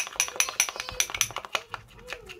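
Metal spoon clinking and scraping against a cut-glass bowl while stirring a thick paste: a quick run of light, ringing ticks that thins out near the end.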